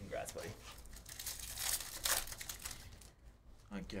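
A foil trading-card pack wrapper being crinkled and torn open by hand, the rustling loudest about two seconds in. The pack is then pulled free of its cards.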